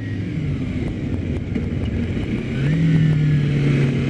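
Kawasaki Ninja 250R's parallel-twin engine running on its stock exhaust while under way; a little over halfway through its pitch rises and it gets louder, then holds steady.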